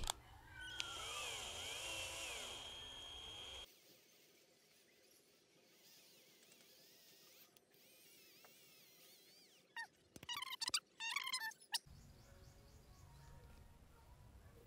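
Cordless drill turning a thread tap slowly into a steel rail, its motor whine rising and falling with the trigger over a steady high tone for about three seconds, starting about a second in. A few short sharp sounds follow about ten seconds in.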